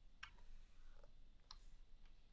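Two faint, sharp clicks of a pen stylus tapping a drawing tablet, about a second and a quarter apart, over near-silent room tone.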